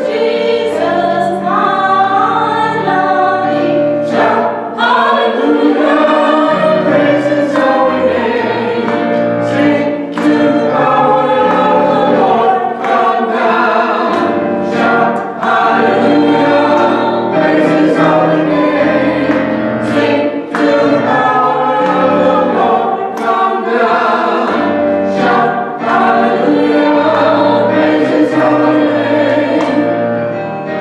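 A small church choir singing together, sustained sung notes moving from phrase to phrase.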